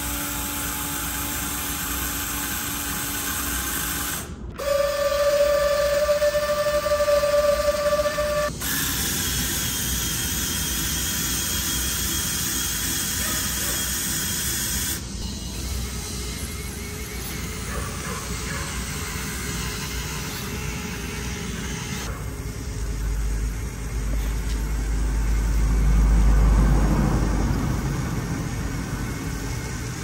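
Small electric gear motors of a homemade cardboard model straddle carrier whining steadily as its scissor lift raises the platform, in several spliced stretches at different pitches with sudden cuts between them. Near the end a deeper rumble swells and fades.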